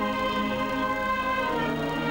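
Slow instrumental music of long held chords, with the harmony shifting about one and a half seconds in.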